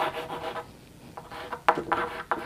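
Chalk writing on a blackboard: short scratching strokes, a pause near the middle, then several quicker strokes.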